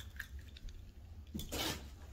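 Quiet room with faint handling of a plush toy, a few soft clicks, and one short breathy noise about one and a half seconds in.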